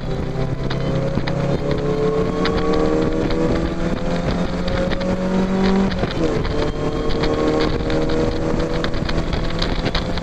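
Mazda MX-5's four-cylinder engine under hard acceleration, heard from the open cockpit: the note climbs steadily, drops at a gear change about six seconds in, then climbs again.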